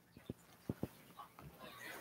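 A few faint, short taps and clicks, like handling noise, over a quiet room.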